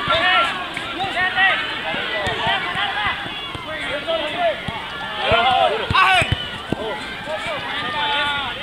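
Several players shouting and calling to one another during a futsal match, short raised voices overlapping throughout, with a sharp knock about six seconds in.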